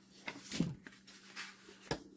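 Handling noises on a craft table: a few light clicks and taps as a clear plastic ruler and paper pieces are picked up and moved, with the sharpest click near the end.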